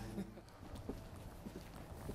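A low steady hum from a walk-in freezer's cooling unit stops just after the start, then faint footsteps on concrete: a few light, irregular taps.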